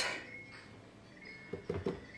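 A few light knocks near the end as a plastic squeeze bottle is set down in a fridge door shelf, over faint room tone.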